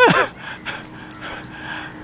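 A man's laugh trailing off in a breathy exhale that falls steeply in pitch at the start, followed by soft breathing.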